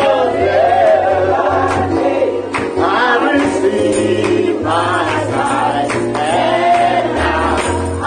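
Gospel praise music: group singing over a bass line and percussion.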